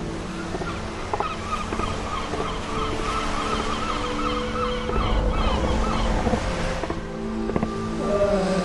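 Harbour ambience: gulls calling in a quick run of short wavering notes, about three a second, over a steady wash of surf. The calls stop about two-thirds of the way through.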